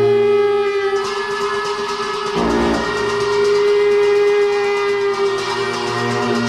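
Tibetan ritual wind instrument holding one long, steady, reedy note under a lower drone, with a low thud about two and a half seconds in.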